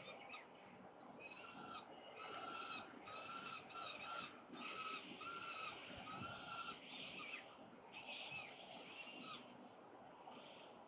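Young peregrine falcons giving harsh, repeated food-begging calls while being fed by an adult, one call after another, about one to two a second, growing weaker near the end.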